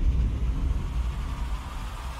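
Deep low rumble of a soundtrack boom slowly dying away, with a faint steady high tone above it.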